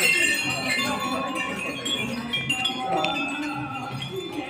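Temple bells ringing, many overlapping tones held and layered, over a low regular beat and background voices.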